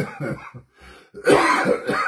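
A man clearing his throat and coughing, loudest in a harsh burst in the second half.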